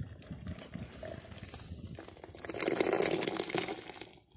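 Tea poured from a copper kettle in a thin stream into a tall travel mug, the liquid splashing into the cup. It grows louder about two and a half seconds in as the mug fills, and stops near the end.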